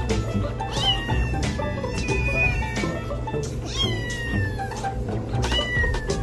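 A young tabby kitten meowing four times, each call falling in pitch, over background music with a steady beat.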